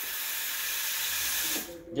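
Breville Oracle's steam wand being purged: a steady, loud hiss of steam blowing out to clear condensed water from the wand before milk steaming. The hiss cuts off about one and a half seconds in.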